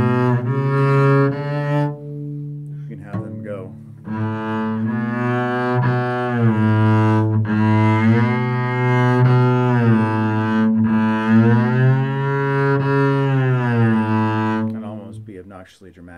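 Double bass played with the bow: a held note, then after a short break a long bowed note that slides smoothly up and down in pitch several times, a glissando 'smear' as the left hand shifts along the string. It fades out near the end.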